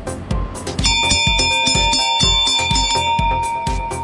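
Velodrome lap bell, a large hanging bell, struck once about a second in and ringing on for nearly three seconds: the bell that signals the last lap of the sprint.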